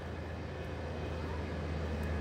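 A steady low hum under a faint, even background noise, with no clear events.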